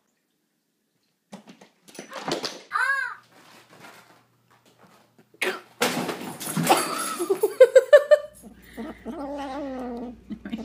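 Bursts of people laughing, with a short high squeal that rises and falls about three seconds in. Near the end a cat starts vocalising.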